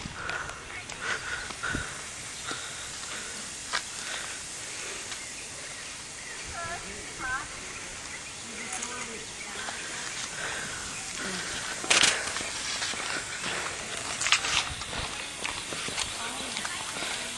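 Outdoor ambience with indistinct voices of people in the background, and a few sharp clicks or knocks, the loudest about twelve seconds in.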